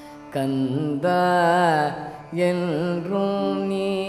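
Male Carnatic vocalist singing phrases with sliding, oscillating ornaments over a steady tanpura drone.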